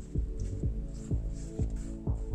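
Background music with a steady low beat, about two beats a second, under sustained tones.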